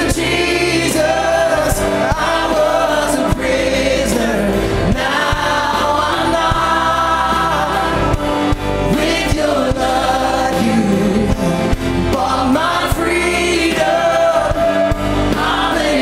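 Live church worship song: several singers in harmony on handheld microphones, backed by a band with a drum kit, its cymbals and drums striking steadily under the voices.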